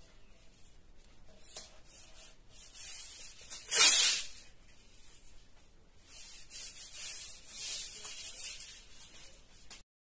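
Masking tape being pulled off the roll along a drywall board, with one loud rip about four seconds in, then a hand rubbing the tape down flat against the board.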